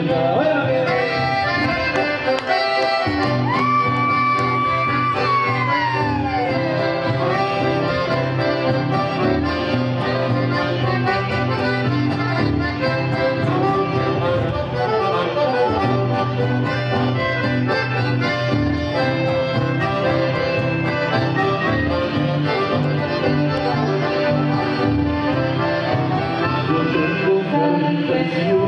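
Instrumental chamamé played live on two piano accordions with guitar, over a steady bass pattern. A few seconds in, a long high note is held and then slides downward.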